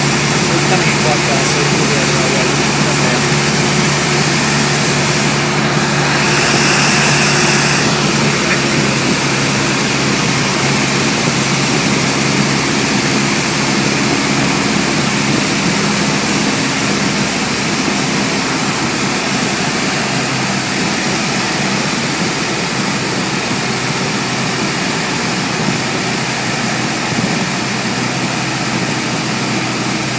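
Single-engine light aircraft's piston engine and propeller droning steadily, heard inside the cabin, with a short burst of hiss about six seconds in. The engine note eases a little after the middle.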